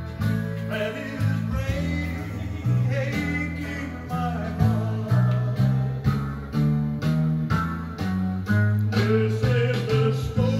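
A recorded song playing through a Wurlitzer model 4002 jukebox speaker: a singer and guitar over a bass line that steps from note to note about twice a second.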